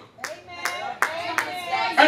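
Four sharp hand claps, evenly spaced a little under half a second apart, with faint voices between them.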